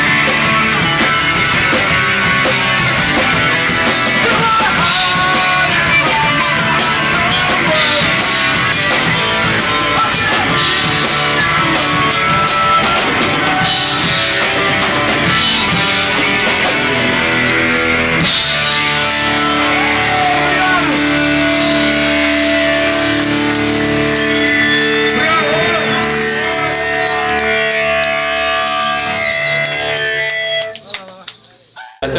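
Rock band playing live: electric guitars over a busy drum kit with cymbal hits. About eighteen seconds in the drums stop after a crash, and held guitar chords with thin, wavering high notes ring on to the end.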